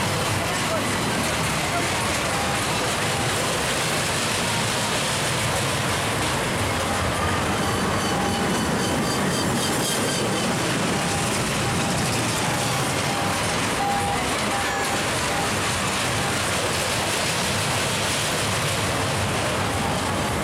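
Steady fairground din: the dragon roller coaster's train running along its steel track, mixed with crowd voices.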